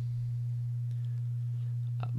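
Steady low electrical hum, a single unchanging low tone, the kind of mains hum picked up by a microphone signal.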